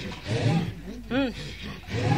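Voices in a traditional Kikuyu song recording, quieter between sung phrases, with a short rising-and-falling vocal call about a second in.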